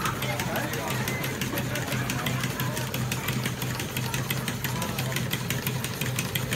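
Working model stationary engines running together, with a fast, even clicking that keeps up throughout, over a steady low hum.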